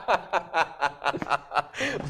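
Men laughing hard, in a rapid run of short laughs at about six a second.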